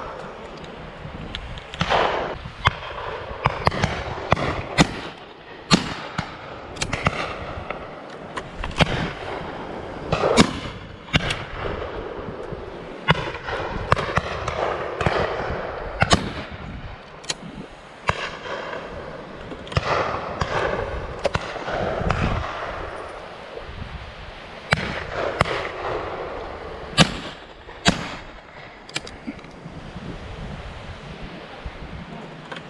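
Shotgun fire on a driven pheasant shoot: around twenty shots at irregular intervals, some close and loud, others farther off down the line of guns.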